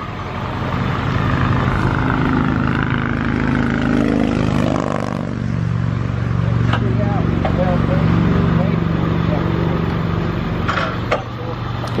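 Roadside traffic: a motor vehicle passes close by about four to five seconds in, its pitch falling as it goes past, over the steady drone of an idling engine.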